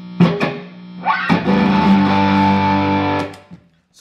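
Telecaster-style electric guitar played through an amplifier: two short strums, then a full chord struck about a second in that rings for about two seconds before being cut off.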